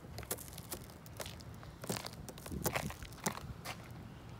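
Faint, scattered ticks and crackles of icy, granular snow on a car's rear window, with no steady sound behind them.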